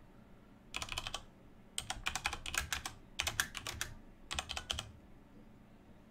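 Typing on a computer keyboard: about five short bursts of quick keystrokes with brief pauses between them.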